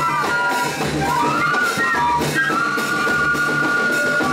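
A banda de pífanos playing: several fifes carry the melody in two parallel voices over a steady drum beat, settling onto a long held note about halfway through.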